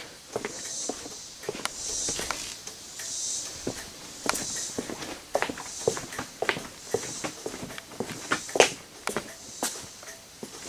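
Footsteps on a concrete floor, with soft scuffs and light clicks about once a second.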